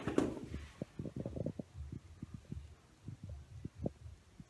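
Soft, irregular low thumps of footsteps on a wooden staircase, many short steps over about three seconds.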